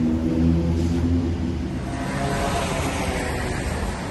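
A low, steady engine hum from a nearby vehicle. About two seconds in it gives way to the hiss of street traffic.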